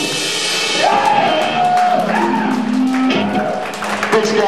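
A live punk band finishing a song: the band sound rings out and gives way to shouts and clapping from the audience.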